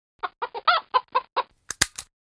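A hen clucking, about seven short clucks in a row, followed near the end by two sharp bangs in quick succession.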